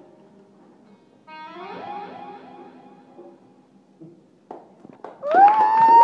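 Electric guitar through effects, playing gliding, sliding notes that fade. About five seconds in, a loud note swoops up and holds steady.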